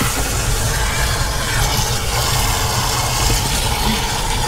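Garden hose water spraying down into a motorhome's waste water tank opening to flush it out: a steady rushing splash with a strong low rumble.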